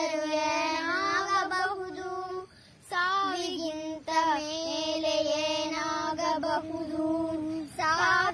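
A high voice singing a slow melody with long held, wavering notes, pausing briefly about two and a half seconds in.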